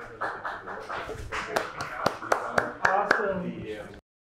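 Several people's voices and laughter with a dozen or so sharp, irregular taps and clicks, which cut off suddenly at the end.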